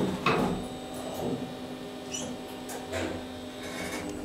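Schindler Eurolift traction elevator car doors sliding shut, with a knock shortly after the start, then a low steady hum inside the car with a few faint clicks.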